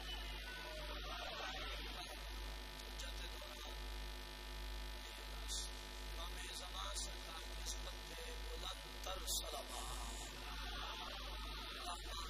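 Steady low electrical mains hum from the microphone and sound system, with a faint voice in the background and a few sharp clicks.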